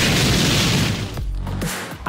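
Background music with an edited-in boom sound effect: a loud burst of noise at the start that fades away over about a second.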